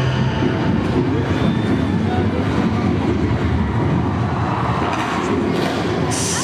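Steady low rumbling noise in the dance routine's soundtrack, played loud over the arena's speakers, with little clear music in it.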